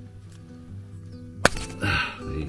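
A plastic wiring-harness connector on the motorcycle snapping apart with one sharp click about a second and a half in as its locking tab lets go. Steady background music plays under it.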